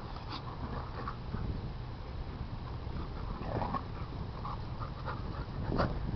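Two dogs play-fighting, making short, scattered vocal sounds, the loudest just before the end. A steady low rumble runs underneath.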